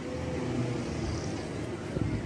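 Steady low hum of a motor vehicle engine running under outdoor background noise.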